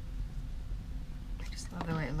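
Steady low hum of room background noise, then a woman's voice starting to speak near the end.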